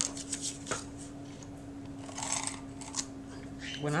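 Handheld tape runner and paper being handled on a cutting mat: a few light clicks, then two short rasping strokes about two and three seconds in as adhesive is rolled onto the paper.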